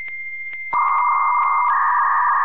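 Electronic synthesized tones: a steady high beep with light ticks about three times a second, joined about three quarters of a second in by a louder buzzing synth tone that holds steady.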